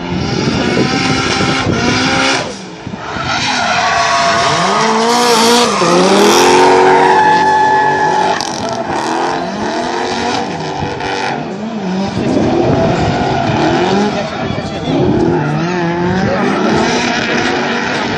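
Two drift cars, one a Nissan 200SX, sliding in tandem with engines revving hard and falling back again and again, with tyre squeal and skidding. The sound is loudest a few seconds in as the cars pass closest.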